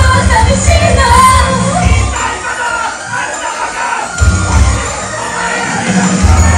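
Live idol-pop performance: a backing track with a heavy bass beat and female voices singing, with an audience shouting along. The bass drops out for about two seconds midway, then comes back in.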